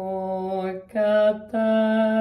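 A woman chanting a mantra, holding nearly one pitch over three sustained syllables with short breaks between them.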